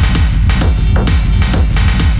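Industrial techno from a DJ mix: a driving kick-drum beat with sharp hi-hat hits about twice a second.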